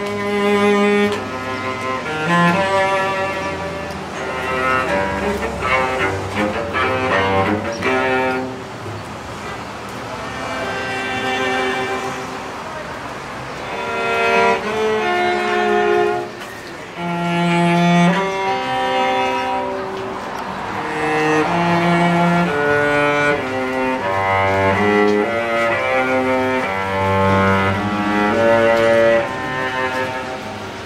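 Street musician playing a bowed string instrument in a cello-like register: a slow melody of held notes over lower sustained notes, changing about once a second.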